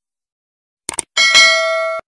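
Sound effects for a subscribe-button animation: a quick double click just under a second in, then a notification-bell ding that rings on in several steady tones.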